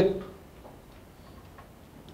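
A man's voice through a microphone trails off at the start, then a pause of low, steady room tone.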